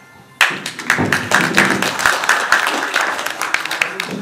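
An audience applauding, a dense run of handclaps that starts suddenly about half a second in.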